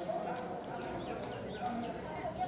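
Indistinct voices of people talking, with light footsteps of sandals on paving stones.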